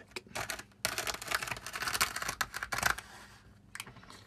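Homemade plastic ballast applicator run along model railway rails, loose fine ballast grit pouring out with a dense crackling rattle for about two seconds before it stops, with a single click near the end.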